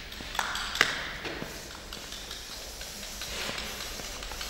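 A couple of sharp taps, the second and loudest about a second in, each with a brief ringing, over a low steady background hum.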